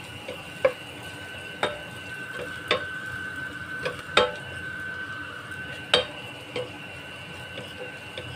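A wooden spatula stirring and scraping in a stainless steel pot, knocking against the pot about six times at uneven intervals. Dried anchovies, garlic and onion sizzle faintly in the oil underneath.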